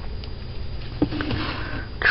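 Close-miked, breath-like noise through the nose over a low steady hum, with a soft click about a second in.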